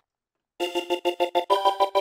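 Korg TRITON software synthesizer's 'Voxic' vocal preset being auditioned: a chord that pulses rapidly, about eight times a second, starting about half a second in. The chord changes pitch about a second and a half in and cuts off suddenly.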